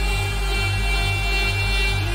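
Electronic dance music from a DJ set: a steady pulsing bass beat about twice a second under a held high synth chord.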